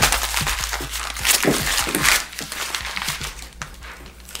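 A sheet of paper being crumpled and crushed by hand, a dense, irregular crackling that is loudest in the first two seconds and then dies down.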